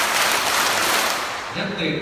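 A roomful of people clapping their hands together on command, a dense patter of claps echoing in a large hall, which stops about a second and a half in.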